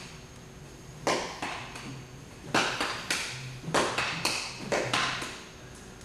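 Nunchaku being swung and caught: a run of about eight sharp taps, several in close pairs, as the sticks strike across the body and slap into the catching hand.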